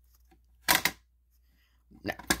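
Plastic pull handle of a Simplex break-glass fire alarm pull station pulled down and snapping into its latched, alarm-activated position, a short double click a little under a second in.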